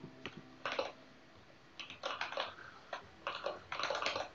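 Typing on a computer keyboard: a few short bursts of keystrokes with pauses between them.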